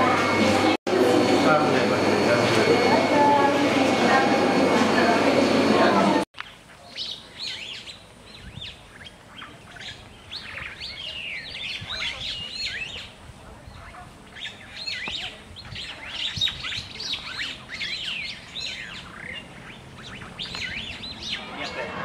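Birds chirping in many short, rapid calls over a quiet outdoor background. This comes after a loud, steady indoor hubbub with voices that cuts off suddenly about six seconds in.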